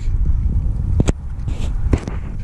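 Wind buffeting the microphone as an uneven low rumble, with two short sharp clicks, one about a second in and one near the end.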